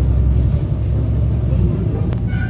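Engine and road rumble of a moving route bus heard from inside the cabin: a steady low drone.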